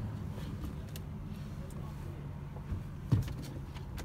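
Steady low engine hum, heard from inside a parked car's cabin, with a few light clicks and one sharp knock about three seconds in.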